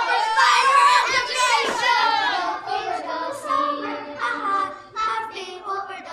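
Children's voices singing, growing gradually quieter toward the end.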